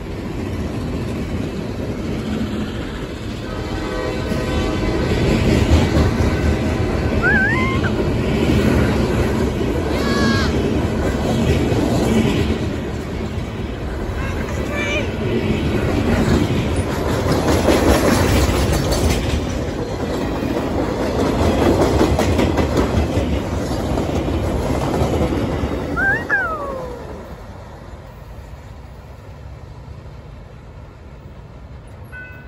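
Freight train's covered hopper cars rolling past close by, a dense rumble and clatter of wheels on rail with a few brief high squeals. About 26 seconds in, the last car passes and the sound falls away.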